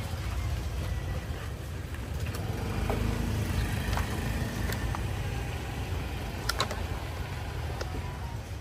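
Steady low rumble of motorbike engines in a busy scooter parking area, with a few sharp clicks about six and a half seconds in.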